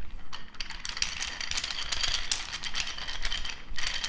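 Wooden beaded massage roller rolled over a shirted back, its wooden beads clicking and rattling in a fast, dense run.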